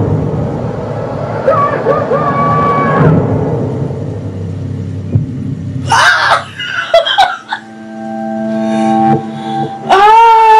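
Dramatic television soundtrack: orchestral music over a low rumble. About six seconds in come a few sharp knocks, and then a long steady tone that swells in loudness.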